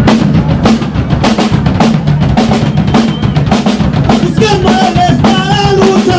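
Live punk Oi! band kicking into a song: fast, driving drum-kit beats with the band playing loud, and a sung voice joining in about four seconds in.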